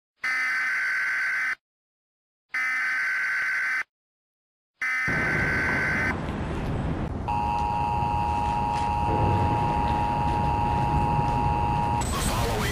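Three long electronic beeps about a second apart, followed by a steady noisy rumble; a steady electronic tone joins the rumble about seven seconds in.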